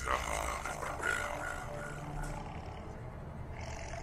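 A sudden deep, roar-like cry that fades over about two seconds, over a low, steady drone of dramatic film music.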